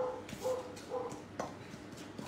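A spoon stirring egg into flour and sugar in a stainless steel bowl, clicking against the metal, with three short high tones about half a second apart.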